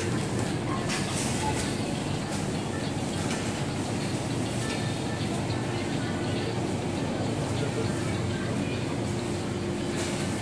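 Steady supermarket background noise: a constant low hum over an even wash of noise.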